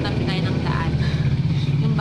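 A vehicle engine running steadily nearby: a continuous low drone that makes the room rather noisy.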